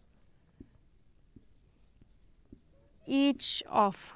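Faint scratching and light taps of a marker pen writing on a whiteboard. About three seconds in, a woman speaks briefly.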